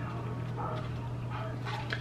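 Quiet eating sounds: a plastic fork scraping and clicking in a styrofoam takeout container, with a few faint short scrapes, over a steady low electrical hum.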